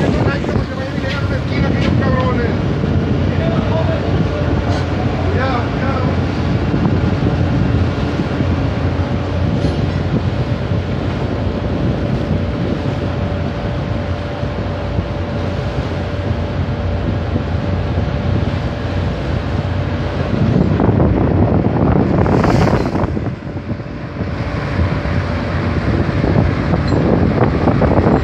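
Wind buffeting the microphone over the low rumble of a fishing vessel's engine at sea, with a faint steady tone through the middle and a louder gust of noise near the end.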